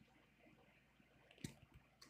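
Near silence: quiet room tone, with one faint sharp click and two softer ticks just after it, about one and a half seconds in, from pliers squeezing bare copper wire.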